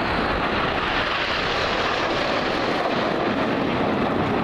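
Formation of BAE Hawk T1 jet trainers flying past overhead, their Rolls-Royce Adour turbofans giving a steady, even rush of jet noise with no rise or fall.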